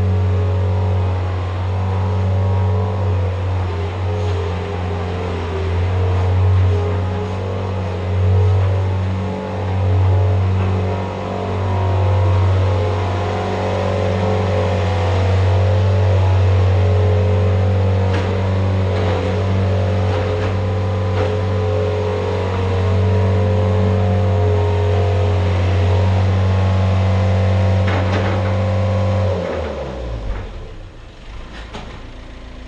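John Deere skid steer's engine running steadily as the machine spreads bedding, with a few short knocks in the second half. The engine stops abruptly near the end.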